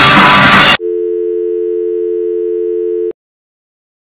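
Loud rock music with guitar cuts off sharply about a second in. A steady two-note telephone dial tone follows for about two seconds and then stops dead.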